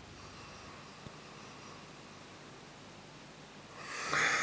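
A long, slow, faint sniff through the nose at a glass of ale, smelling its aroma. A louder breath begins near the end.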